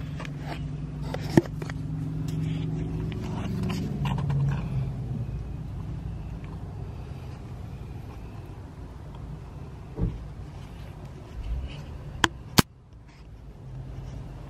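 Car engine running at low speed, heard as a steady low hum inside the cabin. A few sharp clicks and knocks from the phone being handled stand out above it.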